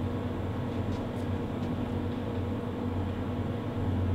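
Steady low hum of room noise, with a few faint ticks about a second in.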